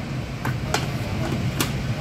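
Plastic lid of a Thermomix being pushed and seated onto its stainless steel mixing bowl: three or four sharp clicks and knocks, over a steady low hum.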